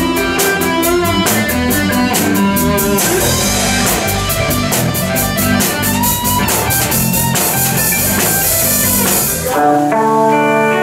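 A live rock band plays an instrumental passage with electric guitar, electric bass and drum kit over a steady beat. The full band sound stops abruptly near the end.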